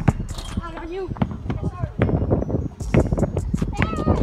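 A basketball bouncing on an outdoor hard court, a string of short knocks, with brief voices calling out.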